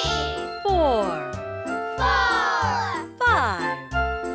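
Bright children's cartoon music over a steady bass beat, with three downward-sliding jingly sound effects as new cubes pop into place.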